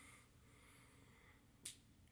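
Near silence: room tone, with one brief faint click about one and a half seconds in.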